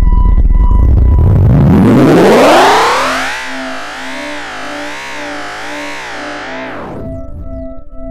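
Electronic music: a loud low throb gives way to a synthesizer tone that sweeps up in pitch and then wavers with a slow, wide vibrato. About seven seconds in it stops abruptly, leaving soft pulsing bell-like tones.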